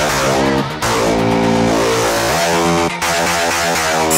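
Rock music with electric guitar.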